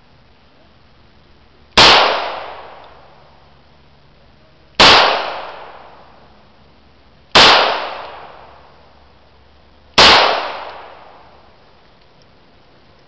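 A 9mm Beretta pistol firing four single shots, slow aimed fire about one every three seconds. Each shot is followed by a trailing echo that dies away over about a second.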